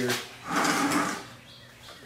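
A mesh filter screen being fitted over the rim of a plastic bucket: one short scraping rustle about half a second in, lasting about half a second.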